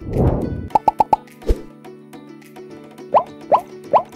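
Intro jingle music over an animated logo, with cartoon sound effects. A loud hit comes at the start, then four quick blips about a second in and a low thump, then three short rising bloops near the end.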